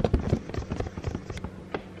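Camera handling noise: fingers rubbing and tapping on the camera and its lens right next to the microphone while wiping the lens, making a run of irregular crackling scrapes and taps that are densest at the start.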